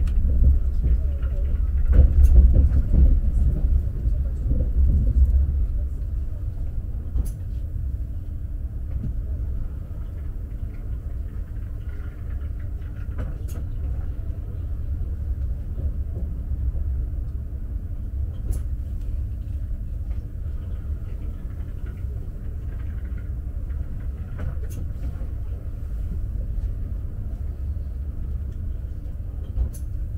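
Steady low rumble heard inside the passenger car of an Alfa Pendular electric tilting train running along the line, louder for a few seconds near the start, with a few faint, sharp clicks spread through it.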